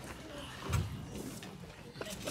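Faint room noise of an audience settling back into its seats: low murmur and rustling, with a soft thump about a third of the way in and a few light clicks.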